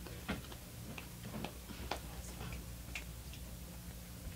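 Faint, irregular light ticks and taps, roughly one every half second to second, over a steady low hum.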